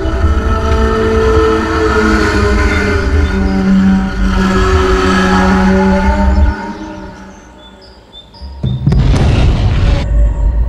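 Horror film background score: sustained, held chords over a heavy low rumble. It fades away after about six and a half seconds, then a sudden loud boom-and-crash sting hits near the end, a jump-scare cue.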